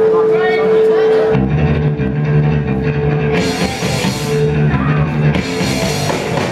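Live punk rock band starting a song: a single held tone, then about a second in the distorted guitars, bass and drums all come in together, with cymbal crashes through the rest.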